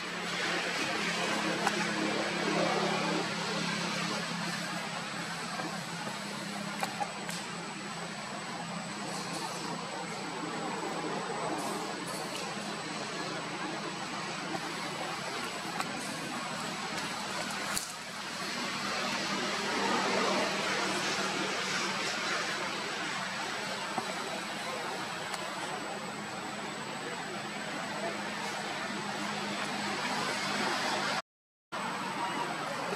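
Continuous outdoor background noise: a steady hiss with a low hum running under it, indistinct voices in it, and a few faint clicks.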